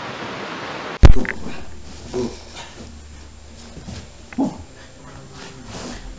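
A steady hiss that breaks off in a loud thump about a second in, followed by a few short, scattered calls from a chocolate Labrador retriever puppy.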